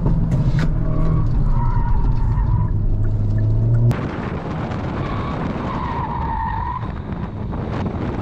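Hyundai Elantra N's turbocharged four-cylinder engine pulling steadily under load, heard from inside the cabin, with a drawn-out tyre squeal. About four seconds in, the sound changes to tyre and wind rush close to the front wheel, with another long tyre squeal.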